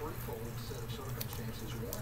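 Faint, indistinct speech over a steady low electrical hum, with a few light clicks.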